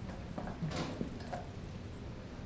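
Doberman gnawing a raw beef leg bone: a few irregular clacks and scrapes of teeth against the hard bone, the loudest near the middle.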